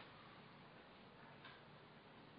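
Near silence: faint room tone in a pause between speech, with one faint click about one and a half seconds in.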